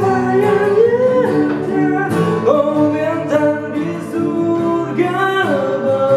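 A man singing long held notes that slide up and down, over strummed acoustic guitars.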